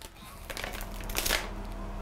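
Plastic food packaging crinkling as it is handled, in a few scratchy rustles that are loudest a little after a second in, over a low steady hum.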